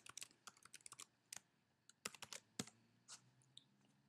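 Faint computer keyboard typing: an irregular run of quick key clicks that stops shortly before the end.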